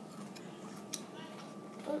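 Faint mouth and chewing sounds of a child eating a raw pepper slice, with a few soft clicks and one sharper click about a second in, over a steady low hum.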